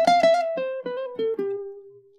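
Ukulele lead lick: a quick run of plucked single notes with hammer-ons and pull-offs, stepping down in pitch, the last note held and ringing out as it fades.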